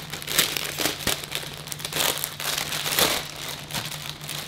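Clear plastic clothing bag crinkling in irregular bursts as hands pull a T-shirt out of it.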